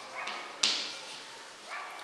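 Chalk writing on a blackboard: scratchy strokes with short squeaks and a sudden sharp stroke about half a second in that fades away.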